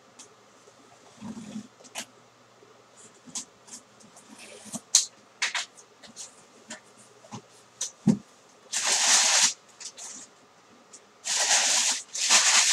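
Shrink-wrap being torn off a cardboard box and the box opened by hand: crinkling plastic with scattered sharp crackles and cardboard clicks. Two longer, louder rustling bursts follow, one about nine seconds in and another near the end, as packing paper and wrap are pulled out.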